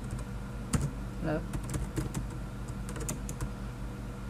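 Computer keyboard typing: a single key click, then a quicker run of clicks as a row of dotted-line periods is typed.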